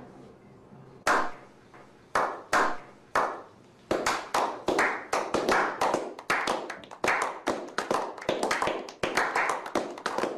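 A small group of people doing a slow clap: single, ringing hand claps about a second apart, building from about four seconds in into quicker, overlapping clapping from several pairs of hands.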